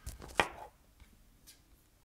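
A few short knocks at a desk, the loudest one sharp about half a second in, then a couple of faint ticks.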